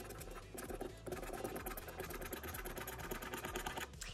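A plastic scratcher scraping the latex coating off a lottery scratch-off ticket in rapid, continuous short strokes, a little louder from about a second in.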